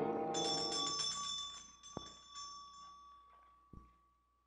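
Electric doorbell ringing with a rapid metallic trill for about two and a half seconds, as a radio-drama sound effect, while the tail of a music bridge fades out. A faint click follows near the end.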